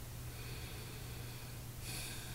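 Faint breathing through the nose close to the microphone, ending in a louder, airy nasal exhale near the end, over a steady low hum.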